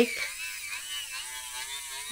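Electric nail file (e-file) with a sanding band running steadily, its motor whine wavering slightly as it grinds excess cured gel topcoat off the underside of a bubble piece.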